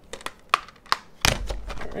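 Plastic Blu-ray keep cases handled: a few light clicks, then a louder snap about halfway through as a case is shut.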